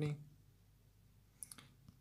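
A few faint, short clicks about one and a half seconds in, during an otherwise quiet pause. The end of a man's word is heard at the very start.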